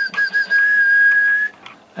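A person whistling one steady note for about a second and a half, wavering slightly at first, into the hand microphone of an Icom IC-271H 2 m transceiver as a transmit modulation test.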